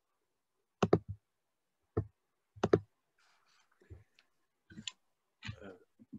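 Sharp clicks over a video-call microphone: three close together about a second in, then two more between the second and third seconds, followed by faint rustling.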